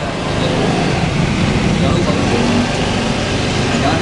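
Indistinct men's chatter over steady street traffic noise.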